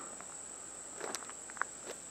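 A faint, steady, high-pitched chorus of insects in woodland, with a few soft ticks and chirps from about a second in.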